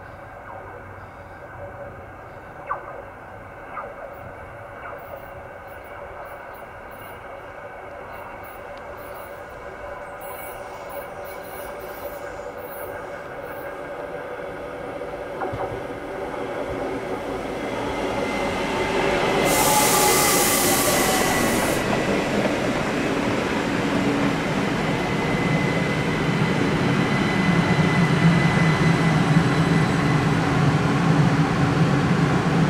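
S-Bahn electric train arriving at a platform: it is faint at first, then grows steadily louder through the second half. Near the loudest point there is a short hiss, and a steady high squeal and a low drive hum carry on as it slows.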